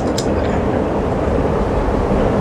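A steady low rumbling noise with no clear pitch.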